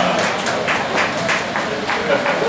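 A handful of scattered hand claps from an audience over a low crowd murmur.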